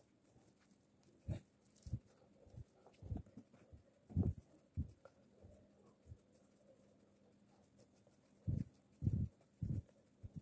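Soft dull thuds of potato patties being patted and pressed by hand in flour and set down on a wooden board, coming irregularly in small clusters with a quieter stretch in the middle.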